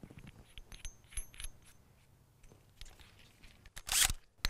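Small metal clinks and taps as a one-inch hole saw is fitted onto its mandrel by hand, some with a faint metallic ring. A louder burst of rattling comes near the end.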